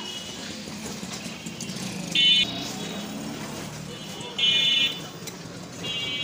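Street traffic hum broken by two short vehicle horn honks, about two seconds in and again about four and a half seconds in, with a longer honk starting at the very end.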